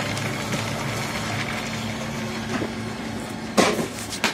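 Coal dust pellet press running with a steady low hum. A short, loud sound cuts in near the end.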